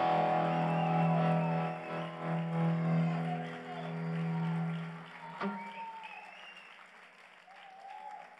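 A live rock band's final chord, electric guitar and keyboards held and ringing out, fading and stopping about five seconds in with a sharp click. Faint cheers and whoops from the audience follow.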